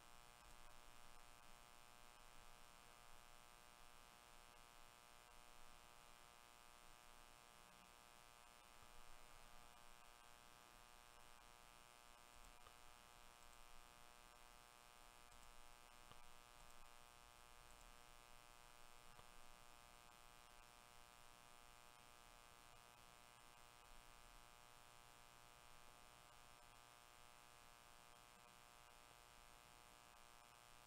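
Near silence with a faint, steady electrical hum made of many even overtones.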